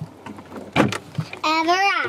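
A sharp knock just before a second in, with a few lighter clicks after it. Near the end comes a person's high-pitched, drawn-out vocal sound.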